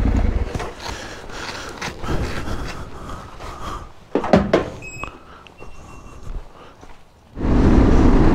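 Motorcycle engine sound of a Yamaha Ténéré 700 parallel twin fades out about half a second in. Scattered knocks and clatter follow, with one sharp thunk about four seconds in. The motorcycle's riding sound, engine plus wind, comes back abruptly near the end.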